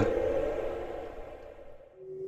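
A faint, even background hiss fading steadily away to near silence.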